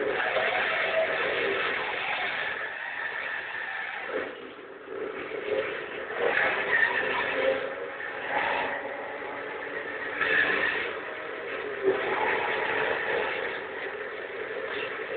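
Car engines revving and running in a street car chase, a Jaguar saloon among the cars, with brief higher-pitched squeals about six and ten seconds in.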